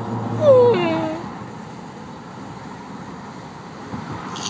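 A woman's tearful whimpering wail: one high cry, about half a second in, that falls in pitch and lasts under a second.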